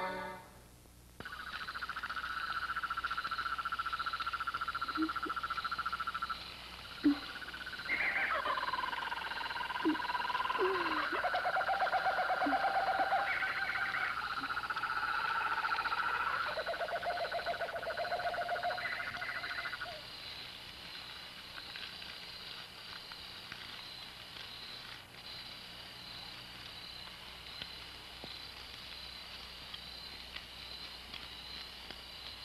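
Night-time forest soundscape: owls hooting and frogs croaking over a regular high chirping of insects. The calls overlap for most of the first twenty seconds, then thin out to the faint insect chirping alone.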